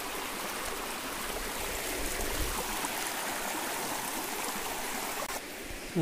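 A shallow forest stream running in a narrow channel, a steady babble of flowing water. It drops off suddenly near the end.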